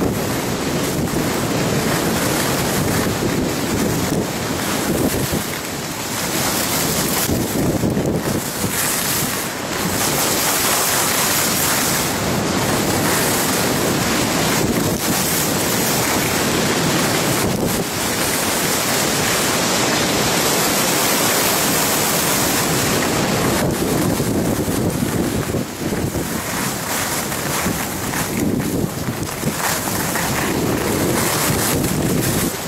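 Wind rushing over the microphone of a camera moving at skiing speed, mixed with the hiss and scrape of skis on packed snow. It is a continuous loud noise that briefly eases and surges a few times.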